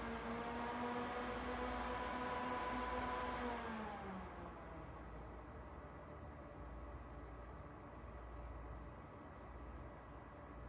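Goldshell CK-Lite crypto miner's cooling fans running at full start-up speed with a steady whine, then spinning down about four seconds in to a quieter steady whir as they settle after power-up.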